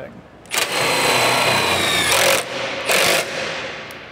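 Cordless drill driving a travel trailer's scissor stabilizer jack screw: one run of about a second and a half with the motor pitch sagging slightly under load, then two short bursts of the trigger.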